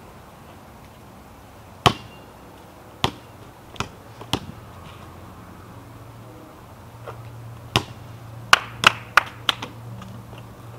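A basketball bouncing on pavement: a few scattered sharp bounces, then a quicker run of about three bounces a second near the end. A steady low hum runs under it from about four seconds in.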